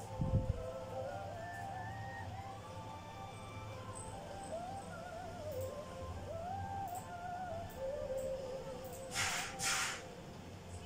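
A woman singing a slow, wavering melody over soft backing music from the show being watched. A low thump comes just after the start, and two short bursts of hiss near the end.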